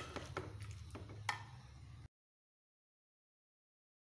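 Low hum with a couple of light clicks of utensil on an aluminium cooking pot, then the sound cuts off to dead silence about two seconds in.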